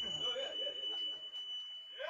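A break in the live band's playing: faint voices of the bar crowd talking, under a thin steady high tone left ringing that cuts off suddenly at the end.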